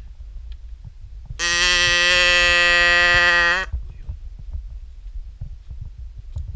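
A zebu cow mooing once, close by: a single loud call about two seconds long, held at a steady pitch and ending abruptly with a slight upturn.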